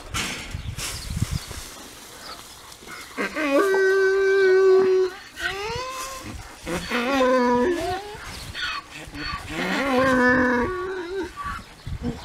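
Donkey braying: a long call in several drawn-out phrases, starting about three seconds in and running on until near the end, with held notes and swoops in pitch. The donkey is hungry and braying for its sunchoke treat.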